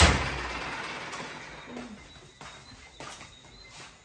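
A single sudden loud bang right at the start that dies away over about two seconds, followed by a few faint knocks.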